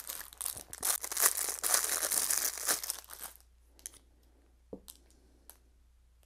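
Thin clear plastic packaging crinkling and tearing as a tool is unwrapped, for about three and a half seconds; then a few faint clicks and taps.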